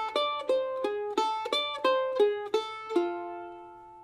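F-style mandolin picked solo: a repeating phrase of single notes and double stops, about three notes a second, some notes held against the next. A final double stop is left to ring and fade during the last second.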